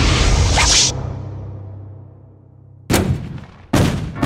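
Film sound effects: a loud energy blast with a rising whoosh that fades away over about two seconds. Two sudden loud hits follow, about a second apart, near the end.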